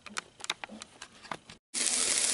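A few faint, scattered clicks and taps, then after a brief dropout the steady sizzle of a slice of ham frying in a pan starts suddenly near the end.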